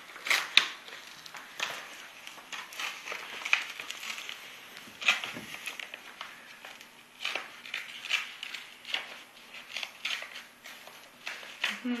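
A large manila paper envelope being torn open by hand: a run of irregular rips and crinkles of stiff paper.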